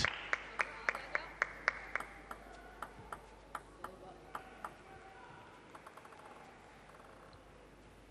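A run of sharp taps, about three a second, growing fainter and sparser, with a quick patter of faint ticks about six seconds in.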